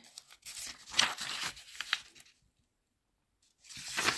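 Paper notebook pages being turned and rustling under a hand for about two seconds, with a few sharper flicks. After a short silence the pages rustle again near the end.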